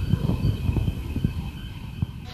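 Wind buffeting a phone's microphone outdoors: an uneven, gusty low rumble with irregular thumps.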